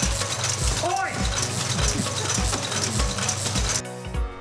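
A nearly century-old taffy-wrapping machine running, a steady dense mechanical clatter. It cuts off suddenly just before the end.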